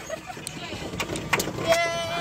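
Zoo ride train car running along its track: a steady rumble and rattle with a few sharp clacks about halfway. A person's voice comes in near the end.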